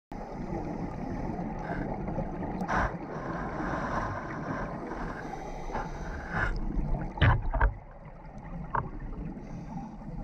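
Underwater sound through a GoPro's waterproof housing: a scuba diver's exhaled bubbles rushing from the regulator, strongest for a few seconds in the middle. A few sharp knocks follow around seven seconds in.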